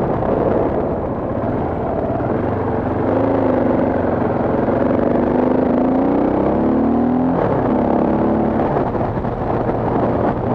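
Motorcycle engine pulling under acceleration, its pitch rising from about three seconds in, then dropping sharply at an upshift a little past seven seconds and carrying on lower. Wind rushes over the microphone throughout.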